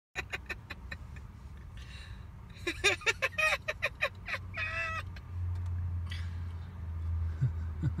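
Low steady rumble of an idling car engine, louder in the second half, with scattered clicks and a few short pitched chirps over it.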